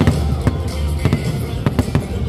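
Aerial firework shells bursting in a rapid series of sharp bangs, several about half a second apart, over music with a heavy steady bass.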